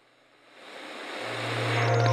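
A rising whoosh, a sound-design riser that swells steadily from near silence, with a low steady hum joining just over a second in, building up to a logo jingle.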